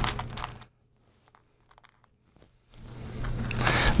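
Soft clicks and scrapes of small game tokens being picked from a pile and set down on a table, with about two seconds of near silence in the middle.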